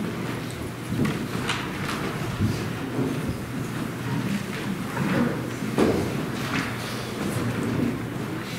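Footsteps and shuffling of several people walking across a carpeted church floor, with scattered knocks and thumps over a low rumble.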